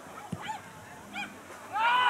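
Shouting on a football pitch: a few short calls, then a loud drawn-out shout that rises and falls near the end. A single sharp thump comes about a third of a second in.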